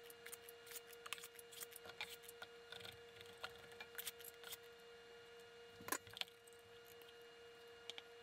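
Faint clicks and scrapes of a metal spring-release ice cream scoop working thick dough into a mesh silicone baguette pan, with two slightly sharper clicks about six seconds in.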